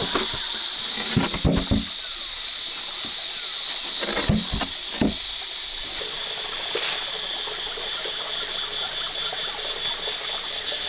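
Steady hiss of a running stream with a steady high-pitched drone over it. A few brief knocks and scrapes of things being handled on rock come in the first half.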